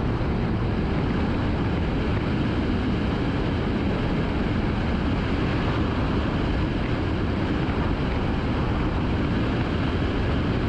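Car driving along a city street: a steady, even rumble of road and engine noise, heaviest in the low end, with no changes in speed or pitch.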